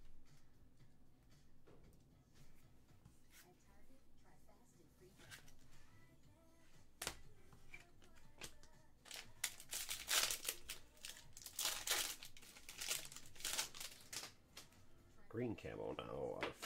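Trading card pack wrapper being torn open and crinkled: a few faint card clicks and one sharp tick, then a run of loud crackly rustling from about nine seconds in.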